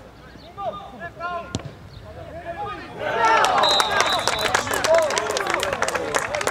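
Sideline voices calling out, a single sharp thud of a football being struck about one and a half seconds in, then from about halfway a loud burst of cheering, shouting and clapping with a short high whistle: spectators and players celebrating a goal.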